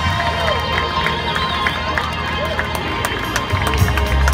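Live band music with crowd voices mixed in. The heavy bass thins out for a few seconds and comes back strongly near the end.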